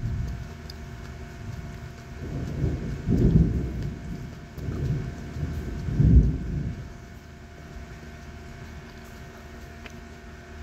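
Low rumble of distant thunder, swelling and fading over several seconds and loudest about three and six seconds in, over a faint steady hum.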